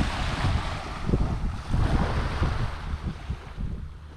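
Small waves lapping and washing up on a sandy shore, with wind buffeting the microphone in uneven gusts.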